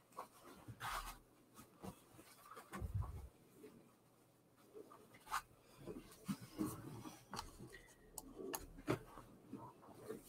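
Faint rustling and rubbing of a large piece of fabric being handled and folded, with scattered soft brushes and taps.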